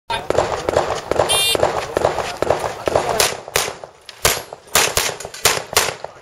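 An electronic shot-timer start beep, short and high-pitched, about a second in. From about three seconds in comes a string of about six pistol shots, two or three a second, which are the loudest sounds. Fainter rapid pops fill the first few seconds.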